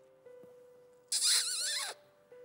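A man makes a loud, high-pitched, wavering squeak with his mouth behind his hands, lasting just under a second, over soft sustained background music.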